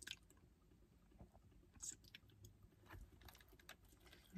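Faint chewing of fast food, with a few soft crunches and mouth clicks scattered over near silence.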